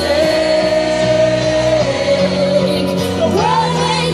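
A woman singing live to her own Korg keyboard accompaniment: she holds one long note for the first half, then starts a new rising phrase near the end, over steady sustained keyboard chords.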